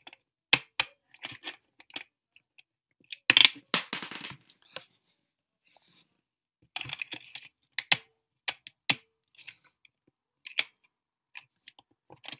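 Coins dropped one after another into the slot of a plastic soccer-ball coin bank with an automatic counter, making sharp clicks and clinks as they go in, with a longer clatter about three seconds in.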